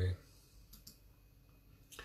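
The tail of a spoken 'Amen', then a quiet pause broken by a few faint light clicks, a pair a little under a second in and another near the end.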